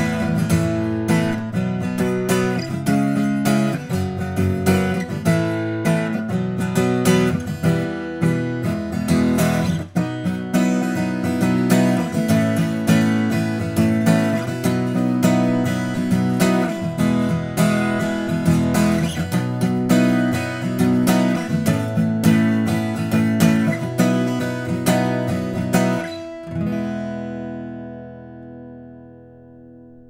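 Small-body 12-fret acoustic guitar with a cedar top and cocobolo back and sides, fingerpicked: a flowing solo piece of plucked notes and chords. About four seconds before the end the playing stops and a final chord is left ringing, fading away.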